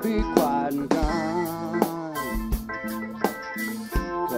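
Live rock band playing, with drum-kit hits and guitar and a melodic line that wavers in pitch.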